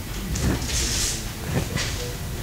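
Lecture hall room noise during a pause: a steady low rumble with a few brief rustles and shuffles.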